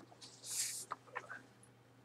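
Handling of packaging: one short rustle as a padded fabric pouch is lifted out of a small cardboard box, followed by a few faint clicks.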